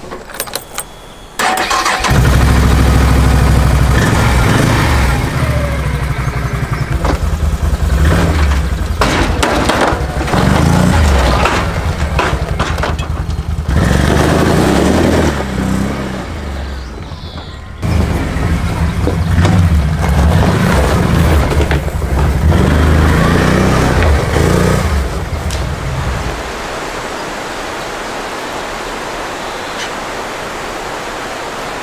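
Can-Am Outlander ATV engine cranking with a few clicks and catching about a second and a half in, then running and revving up and down as the quad drives off. Near the end it gives way to a steady rushing noise.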